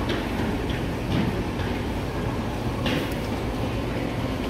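Steady low rumble of background noise, with a few faint clicks and brief higher sounds over it.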